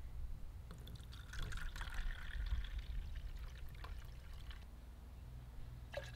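Cal-Tide liquid fertilizer poured from its jug into a plastic measuring cup partly filled with water: a splashing trickle that starts about a second in and thins out over the last couple of seconds.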